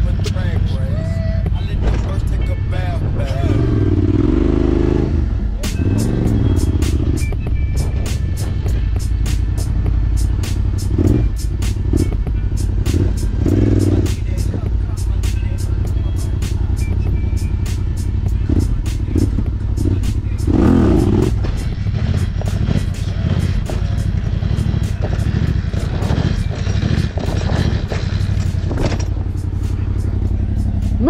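Yamaha Raptor quad's single-cylinder engine running as it is ridden, under background music with a steady beat.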